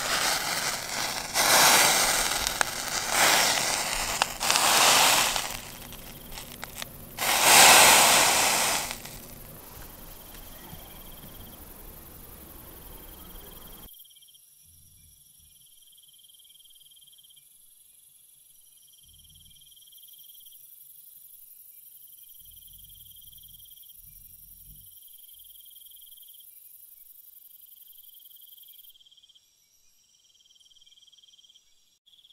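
A run of loud crackling, rustling bursts, about one a second and loudest near the middle, stops suddenly. It gives way to crickets chirping at night: a faint steady high trill with a pulsing chirp repeating about every two seconds.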